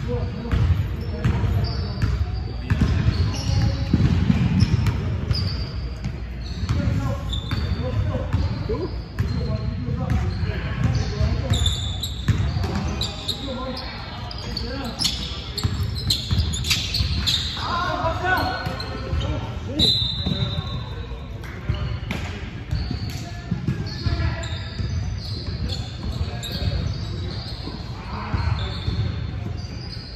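Basketball game on a hardwood gym floor: the ball dribbling and bouncing, brief high sneaker squeaks, and players' voices calling out, all echoing in a large hall.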